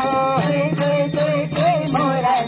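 Devotional group singing, a bhajan with a long held line, over small brass hand cymbals (taal) and jingles keeping a steady beat of about two to three strokes a second.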